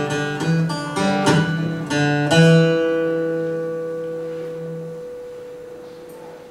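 Acoustic guitar and piano playing the closing notes of a song: a few plucked notes, then a final chord about two seconds in that rings out and slowly fades away.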